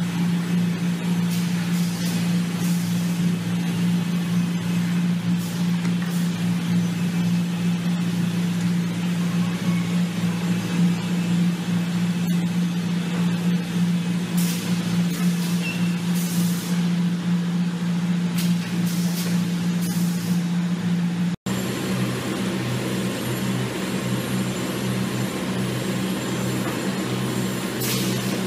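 Fiber cement board production line machinery running with a loud, steady motor hum, overlaid with a few short hisses. The sound drops out for an instant about three-quarters of the way through, then resumes with a slightly lower hum.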